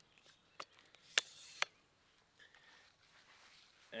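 Flip-lock clasps on a telescoping monopod being snapped open and the pole sections slid out: a few sharp clicks, the loudest about a second in, with a short sliding rasp after it, then faint handling noise.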